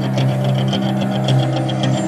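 Music playing loud through car-audio speakers built into a homemade aluminium diamond-plate speaker box: steady heavy bass notes under a fast, even ticking beat.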